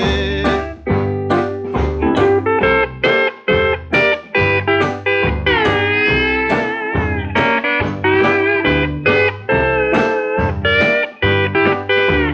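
Instrumental break of a 1953 country string-band record, played from a restored 78 rpm disc: plucked lead string notes, some of them sliding in pitch, over a steady rhythm and bass beat.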